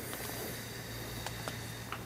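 Quiet room with a steady low hum and a faint airy hiss, broken by a couple of faint ticks in the second half.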